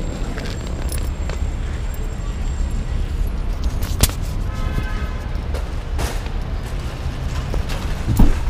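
Wheels of a rolling suitcase rumbling steadily over a concrete sidewalk, with scattered clicks and one sharper click about four seconds in.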